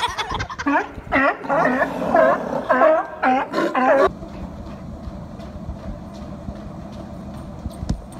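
Sea lions barking, a string of loud calls over about four seconds. Then it cuts to a treadmill's motor and belt running steadily, with light footfalls.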